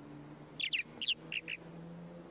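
Purple martins calling: a quick run of about five short, downward-sliding chirps over about a second, starting about half a second in.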